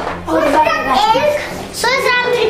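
Young children talking in a small room, their high-pitched voices overlapping and answering one another.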